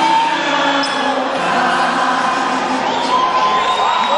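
Live music from a band on stage mixed with an audience cheering, with voices holding and sliding long notes over it.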